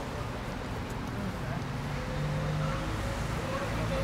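Waterfront city ambience: a steady rumble of traffic with indistinct voices in the background. A low steady engine hum comes in about a second and a half in and grows slightly louder.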